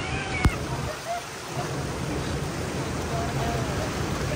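Churning water rushing around a round river-rapids raft boat, a steady rush. There is one sharp knock about half a second in.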